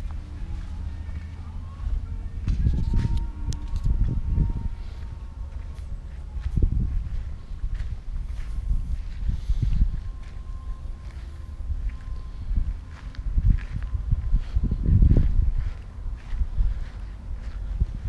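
Footsteps of a person walking across concrete and onto dry grass, under irregular low rumbling swells that are loudest about three, seven and fifteen seconds in.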